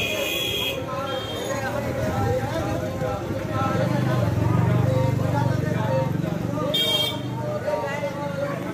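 Voices over street traffic. A vehicle horn toots briefly at the start and again about seven seconds in. A motor vehicle's engine passes close by, loudest in the middle.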